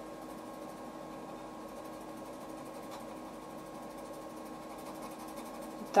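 Colored pencil scratching on paper in rapid short hatching strokes, going on steadily, with a steady hum behind it.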